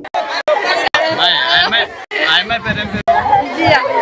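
Several people's voices talking over one another, broken by a few brief drop-outs.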